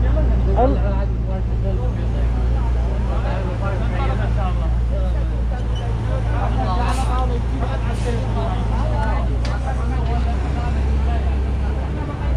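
A vehicle engine idling with a steady low hum that drops away near the end, with people talking close by.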